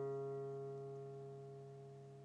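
A single guitar note, C♯ at the fourth fret of the A string, ringing out and slowly dying away on one steady pitch.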